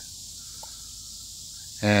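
Steady high-pitched hiss of outdoor background noise, with no clear event in it.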